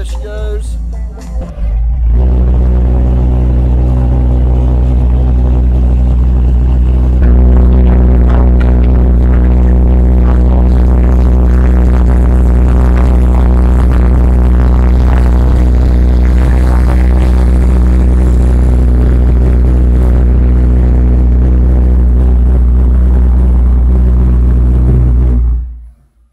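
Homemade pulse jet engine running resonant: a very loud, steady, low buzzing drone holding one pitch. It settles in about two seconds in, gets louder around seven seconds in, and cuts off suddenly just before the end.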